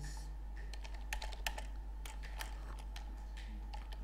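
Computer keyboard being typed on: irregular key clicks in quick runs and pauses as a line of code is entered, over a steady low hum.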